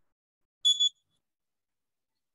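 A brief, high-pitched double beep about half a second in.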